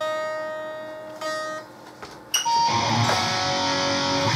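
Electric guitar: a single plucked note rings and fades, a second short note follows, then about two and a half seconds in a full chord is struck and left ringing.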